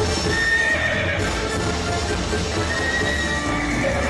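Horse neighing and hoofbeats, a recorded stage sound effect, laid over the theatrical backing music of a Vietnamese cải lương performance.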